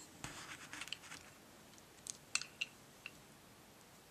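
Faint handling of small paper craft pieces on a tabletop: a brief rustle and scrape in the first second, then a few light clicks and taps around two to three seconds in as small buttons are pressed into place.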